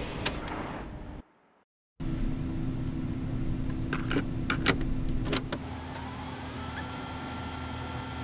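A Sony video monitor switching on: after a brief moment of silence, a steady electrical hum with a few sharp clicks, then a short rising whine.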